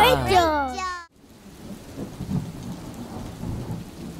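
A rain sound effect with low rumbling thunder fades in after a sudden cut about a second in, then runs on steadily and fairly quietly.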